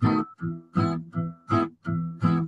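Acoustic guitar strummed in a steady rhythm, heavier and lighter strokes alternating at about three a second.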